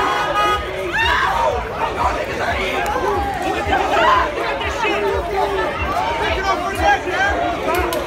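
Crowd of people shouting and talking over one another, many agitated voices at once with no single clear speaker.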